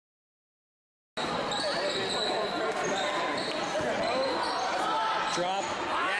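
Silence, then about a second in the sound of a basketball game in a gym starts: the ball bouncing on the hardwood court among players' and spectators' voices echoing in the hall.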